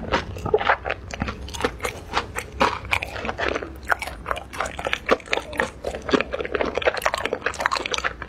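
Close-miked crunching and chewing of a fried Korean corn dog coated in potato cubes: a dense, irregular run of crisp crackles as the fried crust is bitten and chewed.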